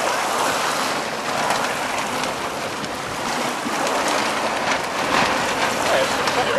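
Steady rush of wind and water spray over choppy water, with a few sharper splashes about two-thirds of the way through.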